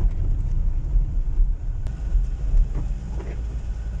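Car driving on a wet road, heard from inside the cabin: a steady low rumble of engine and tyres.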